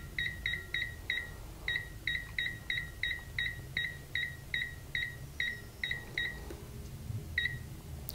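Avery Weigh-Tronix 640 scale indicator's keypad beeper giving a short, high beep with each button press as the configuration digits are stepped through: about twenty quick beeps, roughly three a second, then a pause and one more beep near the end.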